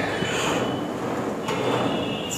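Steady mechanical running noise from a gym cable machine's pulleys and cable during a bent-over rear-delt cable fly, with a faint high whine.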